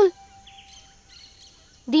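A quiet pause in film dialogue: faint outdoor ambience with a few faint high bird chirps and a faint held tone from the score. A voice ends right at the start and another begins near the end.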